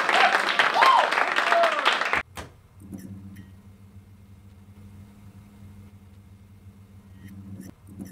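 Audience applause mixed with voices calling out, cut off abruptly about two seconds in. After the cut there is only a faint, steady low hum.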